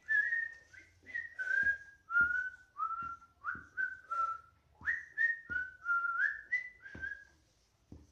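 A person whistling a tune: a string of short notes stepping up and down in pitch, stopping shortly before the end.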